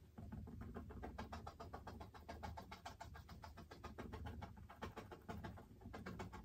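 A bristle paintbrush dabbing acrylic paint onto a stretched canvas: a quick, even run of soft taps, about eight a second.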